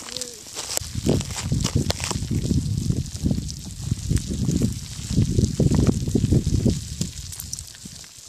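Molten lava pouring over a rock ledge, with scattered sharp crackles and ticks from its cooling crust over an uneven low rumbling noise that swells and falls.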